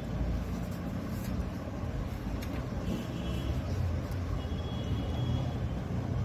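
Steady low background rumble with no speech, with a few faint short high tones near the middle and one or two faint clicks.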